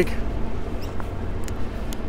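Outdoor ambience recorded while walking: a steady low rumble with a few faint ticks.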